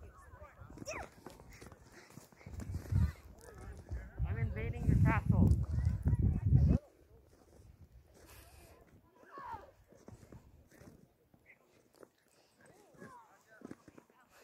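Children's voices calling out and chattering, with a loud low rumble on the microphone for a couple of seconds around the middle that cuts off suddenly.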